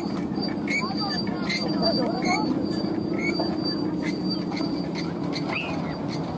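Steady low droning hum from the guangan, the bamboo-and-ribbon hummer carried by a large Balinese bebean kite in flight, with people's voices around it.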